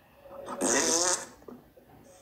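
A man's short, breathy non-speech vocal noise, pitched and hissy, starting about half a second in and lasting under a second.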